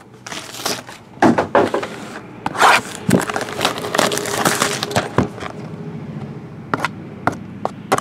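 Hands handling a cardboard box of wrapped hockey card packs and its plastic wrapping: irregular crinkling and crackling with many sharp clicks, busiest in the middle stretch.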